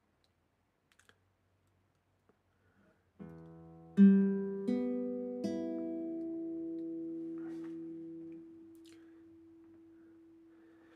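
Nylon-string classical guitar: about three seconds in, four open strings are plucked one after another, low to high, sounding an open E minor chord that is left to ring and slowly fade. The second note is the loudest.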